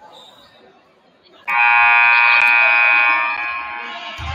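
Gymnasium scoreboard buzzer sounding once, starting suddenly about a second and a half in, held loud and steady for nearly two seconds, then trailing off; a signal that the timeout is ending.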